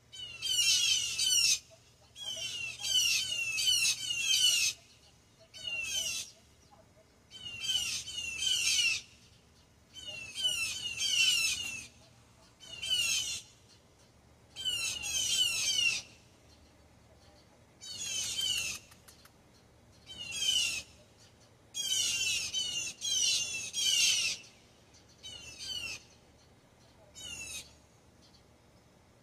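Blue jays giving harsh alarm calls at a hawk, in bursts of one to two seconds with short pauses, again and again.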